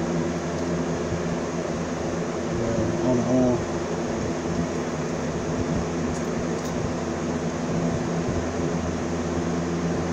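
A steady low machine hum runs throughout. About six seconds in come two faint, brief hisses from a cologne atomiser being sprayed onto the forearm.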